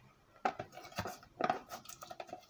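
Washed onion skins being pushed by hand out of a plastic tray into a stainless-steel pot: a few light clicks and knocks with soft rustling, about four in two seconds.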